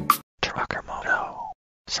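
A whispered voice-over tag, breathy and falling in pitch, coming in just as a short burst of intro music cuts off.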